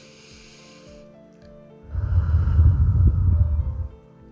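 A woman's slow deep breath taken close to the microphone, over soft background music: a soft hissing inhale that ends about a second in, then a long, louder exhale from about two seconds in, blowing on the microphone.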